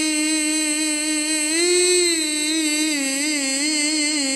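A male qari's voice chanting Quran recitation (tilawah) through a microphone, holding one long note that rises slightly about two seconds in, then breaks into a wavering, ornamented run of melisma toward the end.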